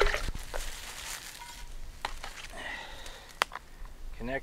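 Light handling of a gravity water-filter setup: faint rustling of the nylon water bag and a few small clicks, with one sharp click about three and a half seconds in.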